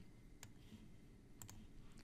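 Near silence with faint computer mouse clicks: one about half a second in, then two quick clicks close together about a second and a half in.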